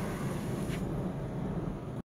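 Cabin noise of a 2019 Camaro SS underway: its 6.2-litre V8 running steadily under road and tyre noise. The sound cuts off suddenly at the end.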